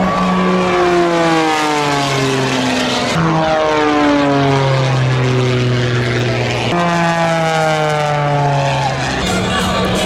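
Propeller engine of an aerobatic biplane flying overhead. Its note slides steadily downward, then jumps back up about three seconds in and again near seven seconds.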